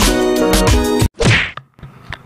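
Intro music with a beat that stops abruptly about a second in, followed by a short swish sound effect.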